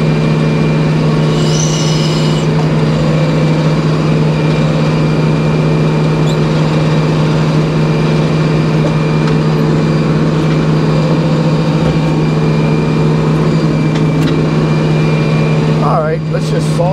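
Hydraulic sawmill running steadily with a deep, even hum and no let-up, while black locust is being sawn. A brief high squeal comes about two seconds in.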